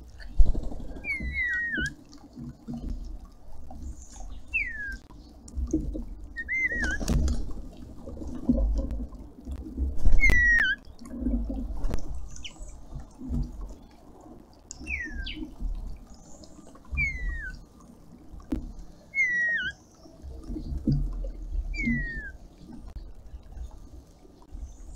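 Red-winged starlings giving short, down-slurred whistled calls, about one every two seconds, over a small garden fountain trickling. Occasional sharp knocks and low thumps sound through it; the loudest come just after the start and about ten seconds in.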